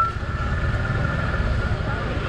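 Motor scooter engine running slowly close by as it edges through a crowded aisle, with people talking in the background.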